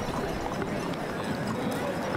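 Steady outdoor ambience of a street parade: a low, even hubbub with no single event standing out.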